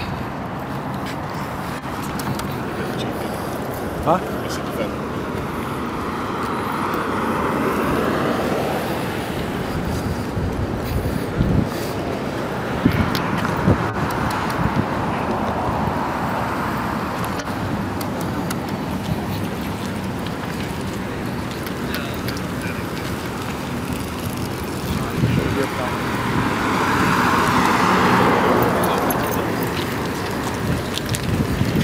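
Street traffic going by, the noise swelling and fading twice as vehicles pass, with indistinct voices of people nearby and a few short knocks.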